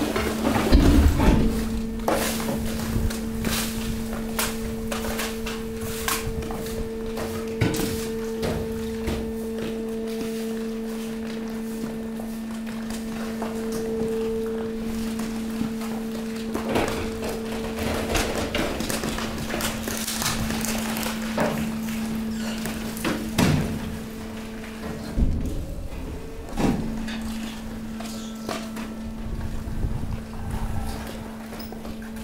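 Hydraulic waste compactor running, its power unit giving a steady low hum while the ram pushes mixed waste into the container. A higher tone rides on the hum for the first half. Scattered knocks, thuds and crunches come from the waste and steel as it is compacted, the loudest near the start and in the last few seconds.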